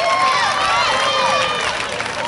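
Spectators shouting and cheering on runners during a track race, several high-pitched voices calling out over one another.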